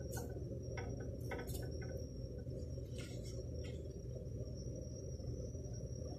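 A wooden spoon stirring milk in a steel pot, giving a few soft taps and scrapes in the first few seconds, over a faint steady low hum.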